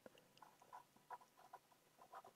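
Faint squeaks and scratches of a marker pen writing on paper: a string of short strokes as letters are written.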